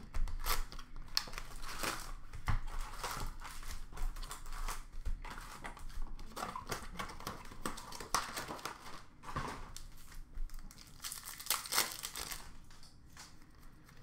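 Hobby box and foil card packs of 2021-22 Upper Deck Series 1 hockey being opened: irregular crinkling and rustling of wrappers and paper, with a longer tearing run about eleven seconds in.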